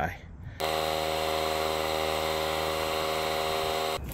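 DeWalt 20V cordless air compressor running steadily as it inflates a freshly beaded tire toward 40 PSI. It starts about half a second in and keeps an even, unchanging hum.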